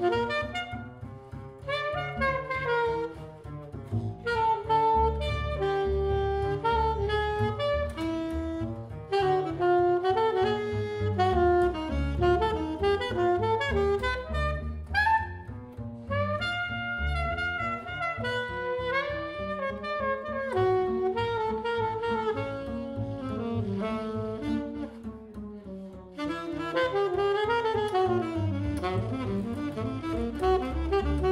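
Jazz duo of a 1968 Selmer Mark VI alto saxophone playing a busy melodic line over an upright double bass plucked pizzicato beneath it, with a quick upward run on the saxophone about halfway through.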